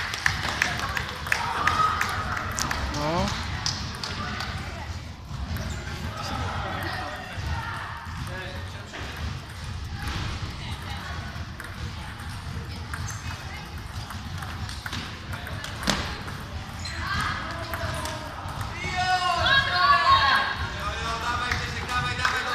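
Table tennis ball clicking against bats and the table in play, with people's voices talking in the hall.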